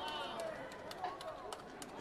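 Voices calling out across a large sports hall, with several sharp taps spread over the two seconds from taekwondo competitors' bare feet and strikes on the competition mat.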